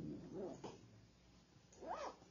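Faint, brief vocal murmurs, like congregation responses: a low murmur about half a second in and a short rising 'mm' near the end.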